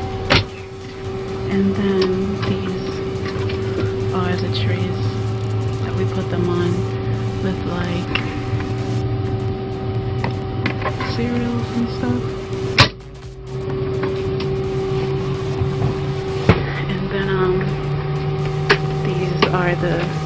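Steady droning hum of an airliner galley and cabin, with a steady tone running through it. Over it come a few sharp metal clicks and knocks as galley oven doors and latches are handled; the loudest is about 13 seconds in.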